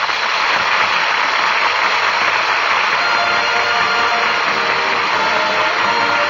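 Loud, steady rushing noise, with faint music coming in under it about halfway through.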